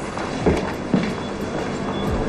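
Footsteps, a few low thuds about half a second apart, over a steady background hum.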